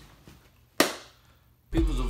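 A single sharp crack a little under a second in, then hip-hop music with a heavy bass starts near the end.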